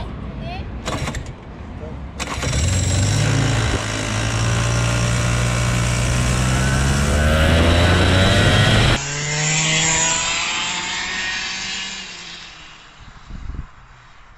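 Vortex ROK 125cc two-stroke kart engine firing up about two seconds in, then running loud and accelerating away with its pitch climbing. About nine seconds in the sound cuts to a kart engine heard farther off, fading out.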